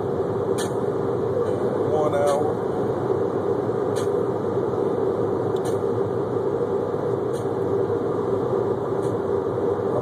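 Steady noise inside a car cabin, with a few faint ticks and a brief voice about two seconds in.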